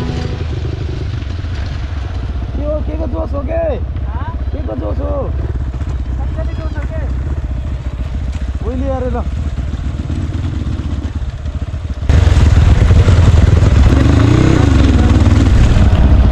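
Dirt bike engine running at low speed on a gravel track, heard from a helmet camera as a steady low rumble. About twelve seconds in, the sound jumps suddenly to a much louder rushing noise.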